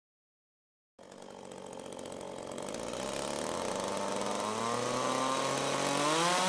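Chainsaw engine fading in from silence about a second in, growing steadily louder, its pitch climbing as it revs up.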